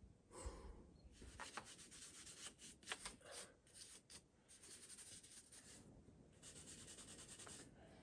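Faint scratching of a climbing brush scrubbing the holds on a granite boulder: quick short strokes in bursts, with a longer run of fast strokes near the end.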